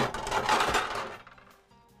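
A brief clinking clatter of kitchenware lasting about a second, over quiet background music.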